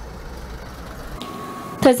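Road traffic: a truck and a minibus driving past, a steady low rumble that cuts off suddenly a little over a second in. A woman's voice starts near the end.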